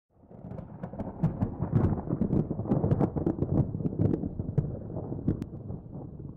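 Cinema-style logo sound effect: a deep rumble full of sharp crackles, swelling in over the first second and slowly easing off.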